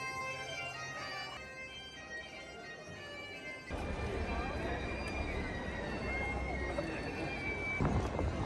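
Bagpipe playing a melody over a steady drone. About three and a half seconds in, the piping cuts off abruptly and gives way to a noisy open-air crowd background with a low rumble.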